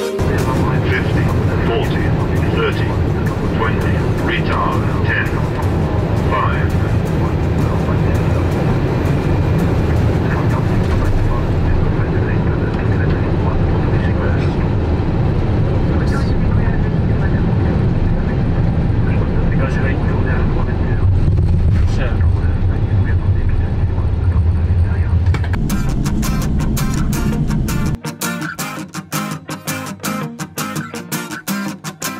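Airbus A350-900 cockpit noise through final approach, touchdown and rollout: a steady rush of airflow and engine noise over a low rumble, with short bursts of voice in the first several seconds. The rumble grows louder and deeper for a few seconds during the rollout. Guitar music takes over near the end.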